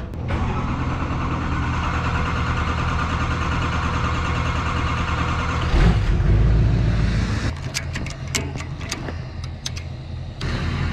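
GMC pickup truck engine running steadily, with a loud low surge in engine note about six seconds in. A series of sharp clicks follows near the end.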